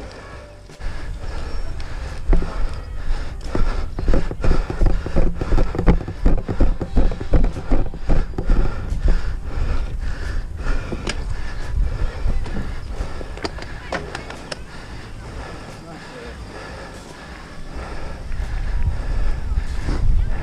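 Mountain bike ridden over bumpy grass, heard from a helmet-mounted camera: wind buffeting the microphone with knocks and rattles from the bike. The noise comes in an uneven run of pulses through the middle, eases off, then builds again near the end.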